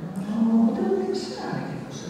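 A woman's voice at a table microphone, talking haltingly with a drawn-out vowel about a third of a second in.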